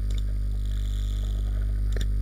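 Steady electrical mains hum in the recording, with one faint click near the end, likely the mouse clicking.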